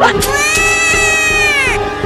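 A cat-like meow: one long call that rises and then falls in pitch, over background music.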